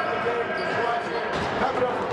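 Overlapping voices of children and adults chattering in a team huddle in a gym, with a few short thuds about a second and a half in.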